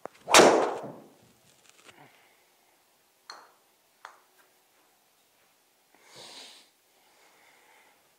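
Driver striking a golf ball into a simulator screen: one loud, sharp crack that rings briefly in the small room. A few faint clicks and a soft rustle follow.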